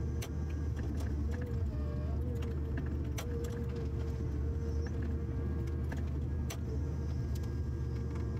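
Forestry harvester's diesel engine running steadily under a constant hydraulic whine while the harvester head works, with three sharp clicks spread through it.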